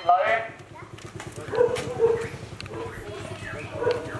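A voice briefly at the start, then faint voices in the background with scattered clicking footsteps of sandals on a paved lane.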